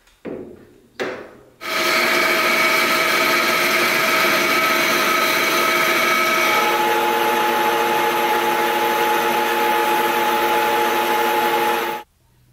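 Metal lathe machining a solid aluminium blank: two short knocks, then the lathe runs with a loud steady whine of several tones as the drill bit cuts into the aluminium. About halfway through the tones change to a new set, and the sound cuts off suddenly at the end.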